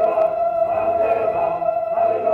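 Church music: a choir singing over a long held organ-like chord, the voices wavering above a steady tone.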